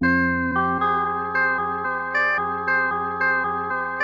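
A sampled Prophet synth keys chord playing back as a chopped loop: the sustained chord is re-struck at the chop points about two or three times a second in an uneven, stuttering rhythm.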